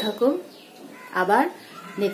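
A woman's voice speaking in two short phrases with rising pitch, with a pause between them.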